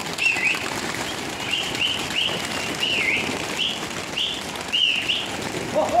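Pigeons' wings flapping as the flock flutters up, under a bird chirping in short high notes about twice a second.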